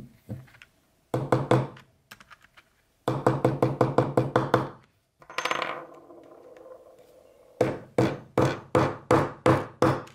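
Maul tapping a metal snap setter on a granite slab, setting snap hardware in leather: three runs of quick sharp taps, the middle run about six a second. A longer ringing sound comes between the second and third runs.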